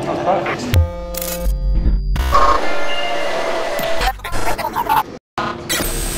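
Edited soundtrack of music with glitchy electronic effects and snatches of voices, chopped by abrupt cuts, with a brief dropout about five seconds in.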